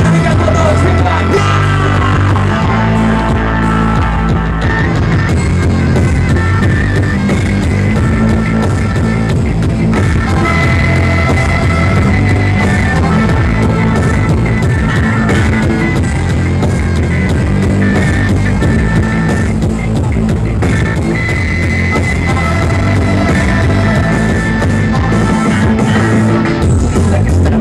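A live reggae-rock band playing an instrumental passage: electric bass and drums under a melody of long held notes on a small flute-like wind instrument.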